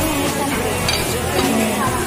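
A serving spoon scooping and scraping corn kernels onto a small plate, with a short clink about a second in, over background music with a singing voice.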